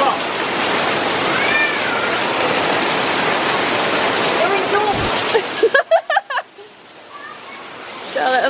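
Heavy rain pouring down onto paving, a loud steady rushing hiss that cuts off suddenly about six seconds in.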